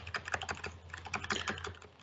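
Computer keyboard being typed on: a quick, irregular run of light key taps, as values are entered into the audiometer software.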